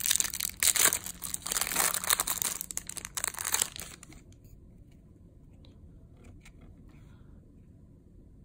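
Thin plastic wrapping crinkling and tearing as it is peeled off a trading card. The crackle stops about four seconds in, leaving a few faint ticks.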